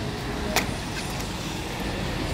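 Steady street traffic rumble, with one sharp knock about half a second in and a fainter tap a little later.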